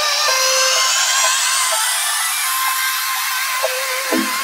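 Tech house track in a breakdown: the bass and drums are filtered out, leaving a held synth tone under a whine that climbs steadily in pitch, a riser building tension.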